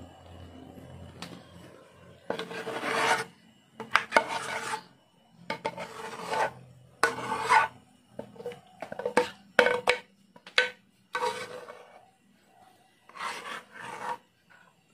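Metal spoon scraping thick maja blanca (corn pudding) out of a metal pot into a glass baking dish: about ten separate scraping strokes starting about two seconds in, each under a second, some with a faint ring from the pot.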